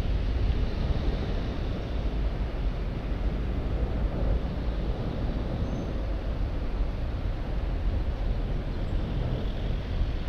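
Steady low rumble from riding a bicycle: wind and road noise on a bike-mounted camera's microphone, with car traffic running alongside.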